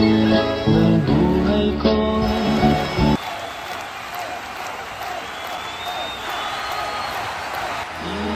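A song with a melody line plays for about three seconds, then cuts off abruptly and gives way to an audience applauding and cheering.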